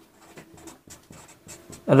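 Marker pen writing on a white board: faint, light scratching strokes as a line of words is written.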